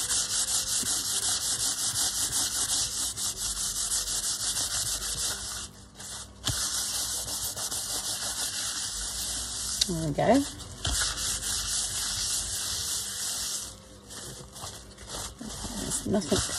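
A cloth rubbing briskly back and forth over a painted paper sheet, buffing in a homemade Vaseline-and-alcohol sealant, as a rapid swishing rasp. It pauses briefly about six seconds in and again near the end.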